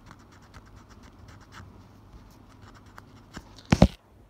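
Wiping by hand: faint, scratchy rubbing in many short strokes as a cloth or fingers wipe a surface close to the microphone. Near the end comes one loud, brief bump of handling.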